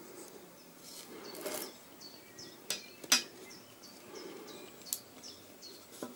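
Small neodymium magnet balls clicking as they snap together while being handled, with a brief rustle of the balls about one and a half seconds in and three sharp clicks in the second half, the loudest about three seconds in.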